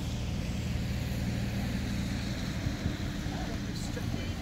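A low, steady engine hum that eases off a little over two seconds in.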